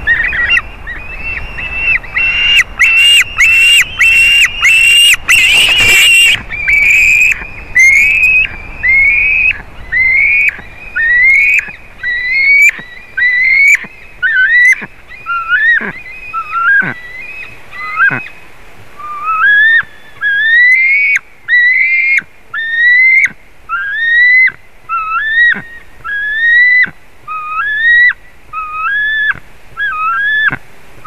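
A juvenile eagle's begging calls: a long series of high, rising whistled notes about one a second, with a loud, rapid run and sharp knocks in the first few seconds.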